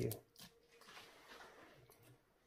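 Faint scratching of an uncapping fork scraping wax cappings off a honeycomb frame.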